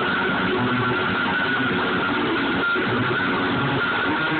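Electric guitar played loud and continuously, a dense wash of chords with one high note held steady throughout.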